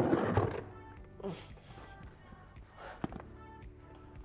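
Soft background music with a burst of rustling and handling noise in the first half-second as a person turns and moves, then a couple of light clicks about three seconds in.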